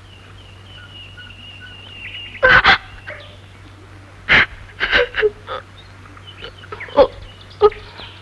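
A woman sobbing, with about seven short catching gasps and cries spread across the middle and end. A faint, steady high whine runs under the first two seconds.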